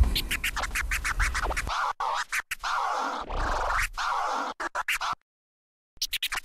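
Music with record-scratching cuts, choppy and stuttering; the bass drops out under two seconds in, and the music breaks off into silence for most of a second near the end.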